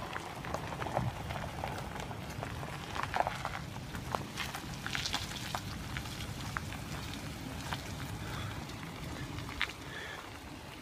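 Toyota Tacoma pickup backing slowly down a gravel boat ramp with a jet-ski trailer. A low, steady rumble runs throughout, with scattered crunches and ticks of gravel.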